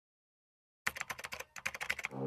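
Rapid clicking keystrokes like typing on a computer keyboard, starting about a second in, with a short break in the middle.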